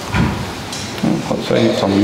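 A wooden knock just after the start, then quieter scuffing and handling noise, as something is moved about on a wooden lectern close to its microphone.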